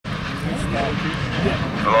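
Engines of several off-road race buggies idling together in a steady, low drone. A loud voice starts calling right at the end.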